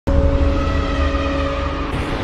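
Cinematic intro sound effect that starts abruptly with a heavy low rumble under a few steady held tones, leading into dramatic music.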